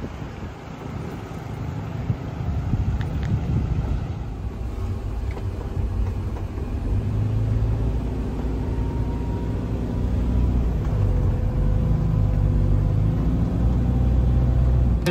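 Engine and road rumble inside the cabin of a moving passenger van, steady and low, growing gradually louder through the second half.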